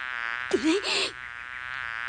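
Cartoon sound effect of insect wings buzzing, a steady buzz that wavers slightly in pitch. A brief voice-like squeak cuts in about half a second in.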